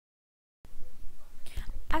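Dead silence for about the first half second, then the background hiss and low hum of a voice recording come in, with a short breath intake just before a voice begins narrating at the very end.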